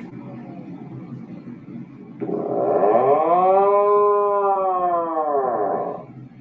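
Atlantic puffin calling: a low, rough growl, then about two seconds in a loud, drawn-out, cow-like moan that rises and then falls in pitch. The moan ends near the end.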